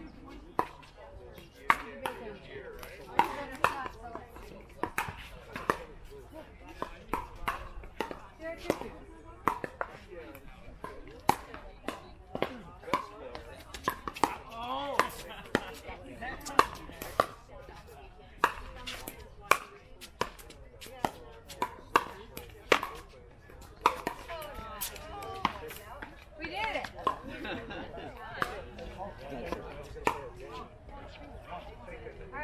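Pickleball rallies: paddles hitting the hollow plastic ball and the ball bouncing on the hard court, a string of sharp pops that come in quick runs of several strokes and pause between points.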